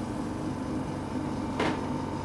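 Clear plastic storage box used as an anaesthetic induction chamber being handled, with one sharp plastic clack about a second and a half in, over a steady machine hum.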